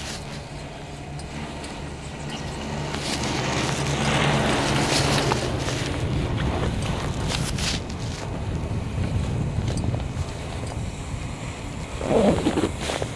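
Chairlift ride noise: a steady low hum of the moving haul rope with wind on the microphone, swelling to a louder rumble about three to six seconds in as the chair passes a lift tower's sheave wheels, followed by a few light clicks.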